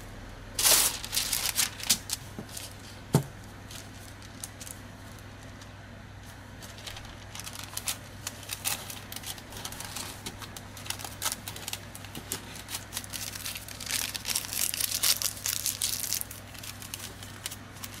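Wax paper crinkling as gloved hands fold a sheet around a bar of soap. The crackles come in irregular bunches, with one sharp click about three seconds in and a quieter stretch before the handling picks up again.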